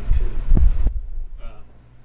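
Low thumps and rumble of bumping and handling noise picked up by the table microphone, with one sharper knock about half a second in, cutting off just before a second in.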